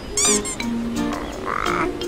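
Cartoon sound effects over soft background music: a short high chirp near the start and a wobbling warble near the end, with no speech.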